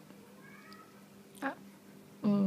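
A small dog whining faintly and thinly for about half a second as it begs for a treat, followed by a short, louder vocal sound about one and a half seconds in.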